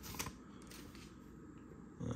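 Faint rustle and soft clicks of trading cards being handled and drawn out of an opened foil pack.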